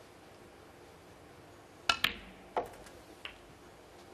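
Snooker balls clicking on a shot: a sharp, ringing click of cue ball on object ball about two seconds in, with a second click close behind, then two fainter knocks as the balls run on. The shot pots a red, taking the break from 90 to 91.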